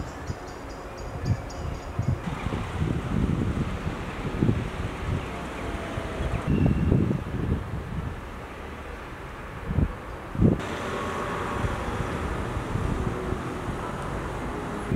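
Wind buffeting an outdoor camera microphone in irregular low gusts over a steady background hiss. The background shifts abruptly a few times, with the strongest gusts a little before the middle and at about ten seconds.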